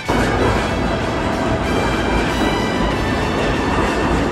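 Loud, steady rushing rumble of a subway train moving along an underground station platform, starting abruptly. Background music plays faintly underneath.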